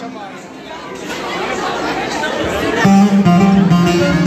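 Chatter of people in a hall. About three seconds in, a plucked string instrument starts playing a run of notes.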